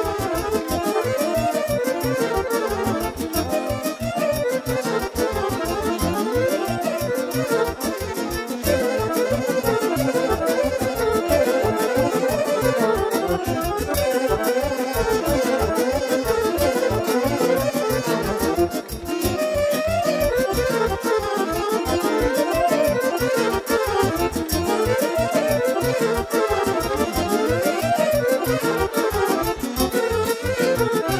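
Live Romanian wedding band playing fast instrumental folk dance music: violins and saxophone running quick, winding melodies over keyboard and a steady, fast bass-drum beat, with a brief break just past the middle.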